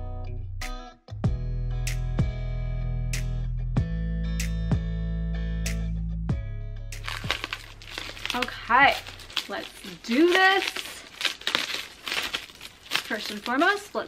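Plucked-guitar background music, which stops about halfway through. Then plastic wrapping crinkles and crackles as it is pulled off a new closet hanging rod, with a few short vocal sounds in between.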